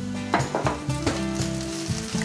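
Vegetables sizzling in a hot non-stick wok while a spatula stirs them, with a few sharp scrapes and taps of the spatula against the pan. Background music with steady held notes plays along.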